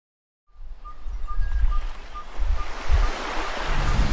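Lakeshore ambience: water lapping and washing at the shore, with wind buffeting the microphone in low gusty rumbles, starting after a brief silence. A few faint high peeps repeat evenly in the background.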